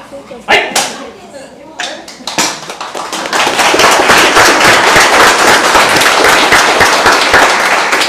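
Two sharp cracks about half a second in, a few scattered claps, then a crowd applauding, swelling about three seconds in and going on steadily.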